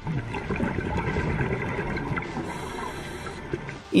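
Steady rushing water noise of an underwater recording, easing off near the end.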